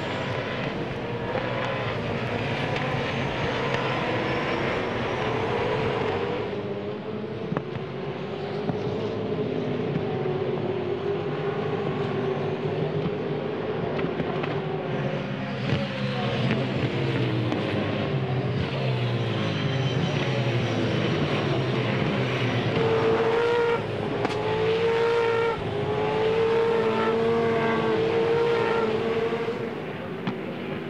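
Several V8 Supercars' 5-litre V8 racing engines running hard as the cars pass in close company. The engine notes rise and fall through gear changes, with short held notes and breaks near the end.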